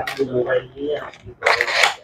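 Cardboard packaging scraping as the inner tray of a small gadget box is slid out of its sleeve: a short, loud, rough rasp about one and a half seconds in, after quieter handling.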